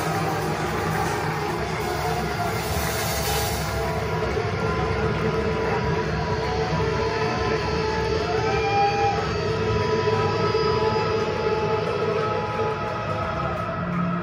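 Dark ambient drone played over the PA between songs: a steady low rumble under a held tone, with a few short tones that slide up and back down.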